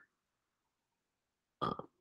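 Near silence, then near the end a man's short, hesitant "uh".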